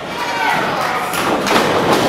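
Thuds of wrestlers' bodies and feet on a wrestling ring's canvas, a couple of sharper ones in the second half, with voices shouting over a loud hall din.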